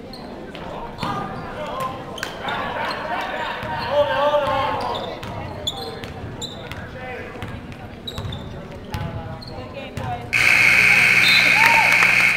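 Basketball game sounds on a gym floor: a ball bouncing and sharp knocks, with crowd voices and shouts. About ten seconds in, a loud steady buzzer starts and holds for about two seconds, the gym's scoreboard horn stopping play.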